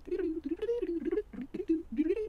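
A man humming, one wavering pitch that slides up and down with short breaks.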